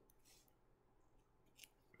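Near silence, with a few faint, brief rustles of plastic penny sleeves as sleeved baseball cards are shuffled in the hands, once just after the start and again near the end.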